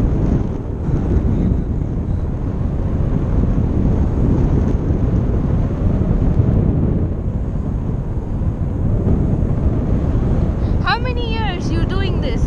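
Steady wind rushing over the microphone of a camera carried on a tandem paraglider in flight. About eleven seconds in, a person's voice briefly rises above it.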